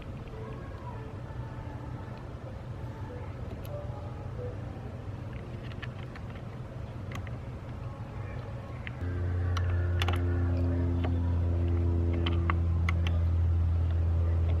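Small scattered clicks and taps of a nut and ring terminal being handled and fitted onto a car battery's terminal post. About nine seconds in, a steady low motor hum starts and keeps on, louder than the clicks.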